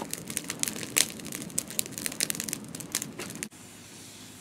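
Blazing wood campfire crackling and popping with many sharp snaps. The crackling stops suddenly about three and a half seconds in, leaving a quieter steady hiss.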